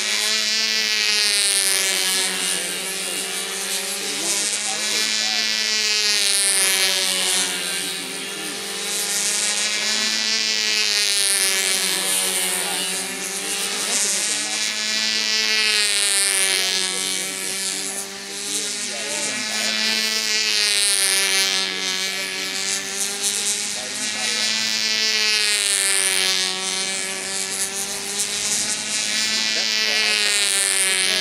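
Small two-stroke glow engine (OS .25 LA) of a Brodak Ringmaster control-line model plane running at full throttle as it circles the pilot, its buzzing pitch rising and falling once every lap, about every five seconds.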